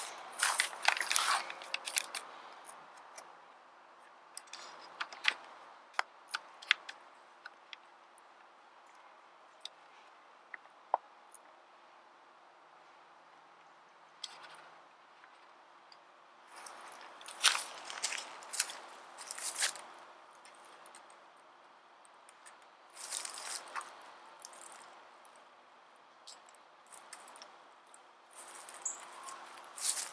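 Quiet, scattered crunches, rustles and sharp clicks from someone moving about close by and handling a plastic trail camera strapped to a tree, with its case being opened near the end. A faint steady hum lies underneath.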